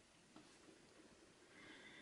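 Near silence: room tone, with one faint tap about a third of a second in as a Montblanc fountain pen dots a full stop on paper, and a faint rustle near the end.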